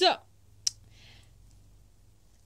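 The tail of a woman's spoken word, then a single sharp click about two-thirds of a second in, followed by a faint soft hiss and a quiet pause.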